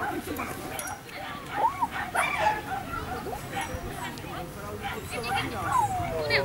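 A dog barking and yipping a few times in short calls, over people's chatter.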